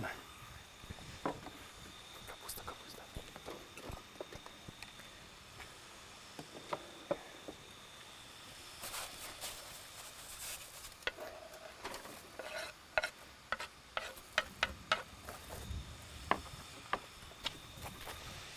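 Chopped vegetables sizzling in a frying pan on a portable gas stove, with scattered clicks and scrapes of a knife and spatula against the pan and a wooden cutting board as greens are tipped in and stirred. A low rumble of distant thunder near the end.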